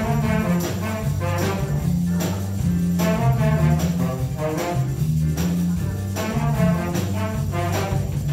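Student jazz rock band playing live: a bass guitar line moving underneath, drum kit with steady, evenly spaced cymbal strokes, and a horn section of trumpet, tenor saxophones and trombone playing chords over the top.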